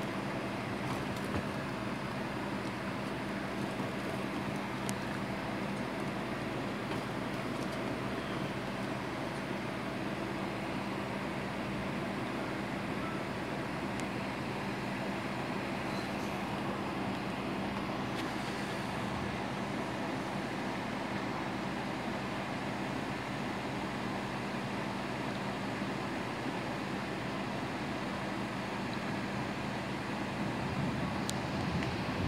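Heavy rain falling steadily, an even hiss with a low steady hum beneath it and no thunder.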